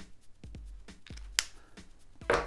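Light handling of a paper card and a felt-tip pen on a tabletop: a few faint ticks and one sharp click about one and a half seconds in.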